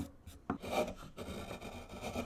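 Hand-carving sounds on a basswood blank: a sharp knock at the start and another about half a second in, then a steady scraping rub as a hand sweeps over the wood and a carving gouge cuts into it.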